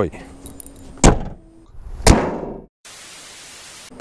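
Bonnet of a 2015 Kia Ceed hatchback being shut: a sharp knock about a second in, then the slam of the hood latching a second later, ringing briefly as it dies away.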